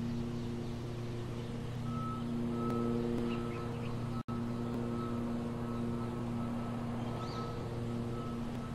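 A steady low machine hum runs throughout. A short high beep begins repeating about two seconds in, with faint bird chirps above. The sound cuts out for an instant just past the middle.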